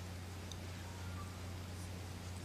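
Quiet room tone of a large hall: a steady low hum with a few faint clicks and rustles.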